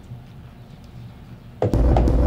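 A quiet stretch with a faint low hum, then about one and a half seconds in the beat being built in Logic Pro starts playing back: a deep bass under a steady held synth note.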